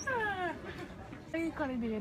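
A woman whimpering in mock crying: a high whine that falls in pitch at the start, then a few shorter falling whines near the end.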